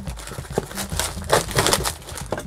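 Clear plastic stretch wrap on a cardboard box crinkling and crackling as it is cut and pulled with a utility knife, in a series of short irregular rustles.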